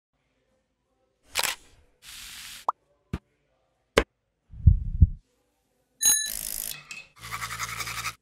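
A quick run of separate short sounds: swishes, sharp clicks, a brief rising tone, and a knife cutting through an apple onto a wooden board with two low thuds. Near the end comes the rhythmic buzz of an electric toothbrush running for about a second.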